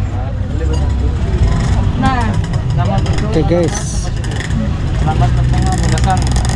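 People's voices in short stretches of talk over a steady low rumble.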